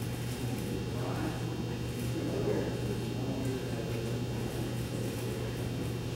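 Indistinct murmur of people talking quietly in a large room, over a steady low electrical hum.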